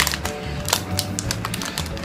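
A plastic snack packet crinkling in quick, irregular crackles as it is handled and turned over, with light background music underneath.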